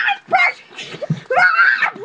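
A boy yelling and screeching in a run of short wordless bursts, the longest near the end.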